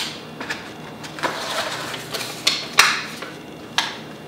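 Unpacking handling noise: paper and packaging rustling, with a handful of short sharp clicks and taps spread through it.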